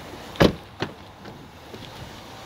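A door of a 2018 Jeep Grand Cherokee is handled: a solid thud about half a second in, followed by a lighter click.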